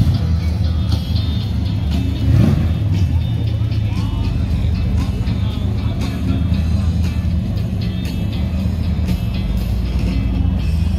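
A first-generation Plymouth Barracuda's engine running as the car rolls slowly past, with a brief louder swell about two and a half seconds in. Music plays throughout.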